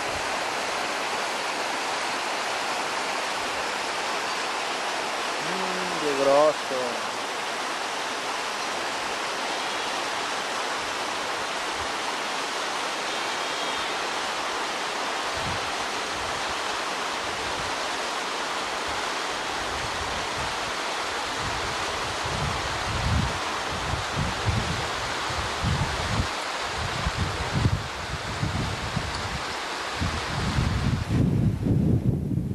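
Mountain stream running steadily over rocks. A brief call that falls in pitch sounds about six seconds in, and low buffeting from wind on the microphone sets in from about twenty seconds.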